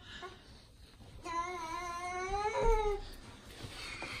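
A toddler's voice: one long wavering sung "aah" of about a second and a half, lifting in pitch near its end before it drops away.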